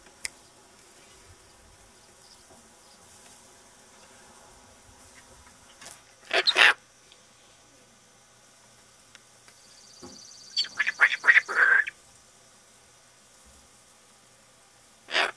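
Cockatoo squawking: one loud harsh squawk about six and a half seconds in, then a quick run of about seven short squawks near the end.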